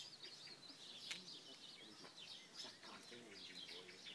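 Small birds chirping and twittering faintly: many short, quick, high calls scattered throughout, over quiet outdoor air.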